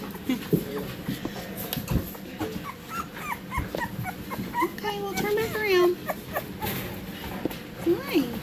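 Very young American Bully puppy, eyes just opened, whimpering and squealing in short high squeaks, with a longer wavering cry about five seconds in.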